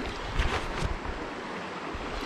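Creek water running steadily, with wind on the microphone. A few brief splashes come about half a second in, from a hooked brown trout thrashing at the surface.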